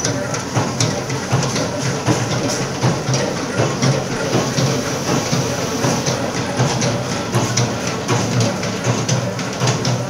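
Batasa (sugar-drop) making machine running: a steady low hum under dense, irregular clicking and clattering from its moving parts.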